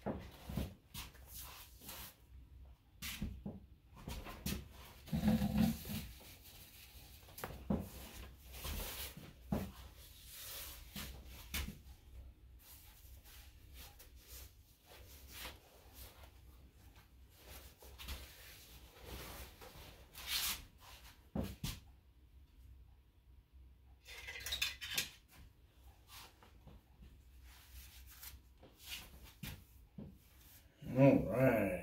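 Scattered rustles and soft knocks of handling, chiefly the barber's cape being rustled and adjusted around the neck, with a louder thump about five seconds in.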